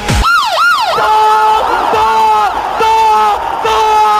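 Stadium goal-signal sound effect: two quick siren-like swoops up and down, then a sustained horn-like tone repeated about once a second, each blast bending in pitch at its ends.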